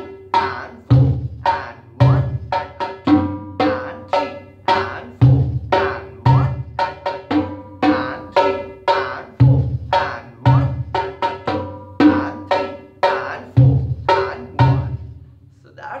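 Three congas played by hand in the slow keherwa rhythm: a steady, repeating pattern of ringing strokes on the high and mid drums with deep bass-drum strokes falling regularly underneath. The playing stops shortly before the end.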